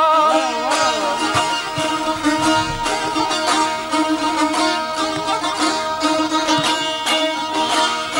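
Azerbaijani sazes (long-necked lutes) playing a fast plucked aşıq folk melody over ringing drone strings. A man's ornamented singing voice trails off about a second in, and the sazes play on alone.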